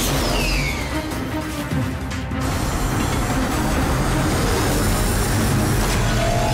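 Cartoon sound effect of a large armoured train speeding along its rails: a steady, dense mechanical rush, with a falling whoosh in the first second and background music mixed in.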